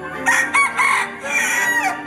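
A mixed-breed Bielefelder × Golden Cuckoo Marans rooster crowing once: three short broken notes, then a long drawn-out final note that drops away at the end.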